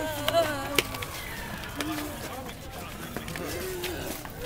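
Voices of a crowd of costumed zombie walkers on a city street, with one voice held near the start and a few sharp clicks in the first second, then scattered talk over street noise.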